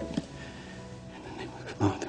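Soft background music fading away, with short, breathy vocal sounds from a person. The loudest comes near the end.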